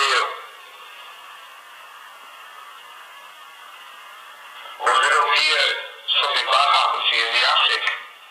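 A thin voice with no low end, as if from a small speaker or radio, comes in two stretches about five and six seconds in, over a steady hiss.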